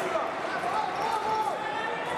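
Fencers' feet tapping and thudding on the piste as they step in guard, over a steady murmur of voices in a large, echoing hall.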